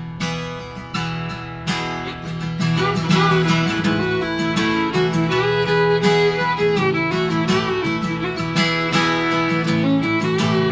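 An acoustic guitar strums a steady rhythm while a fiddle plays an instrumental break. The fiddle's bowed melody comes in louder about three seconds in.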